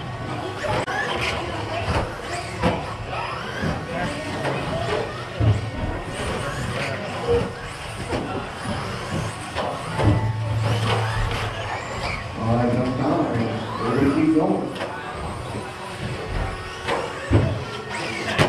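People talking in a hall, over 1/10-scale electric RC stadium trucks with 13.5-turn brushless motors running on the track, with occasional sharp knocks.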